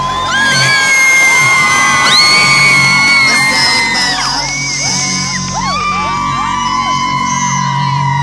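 Large arena concert crowd screaming and whooping, many high voices rising and falling over one another, loud throughout, with the band's music playing low underneath.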